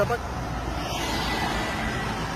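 Street traffic noise: a steady low rumble of vehicle engines on the road.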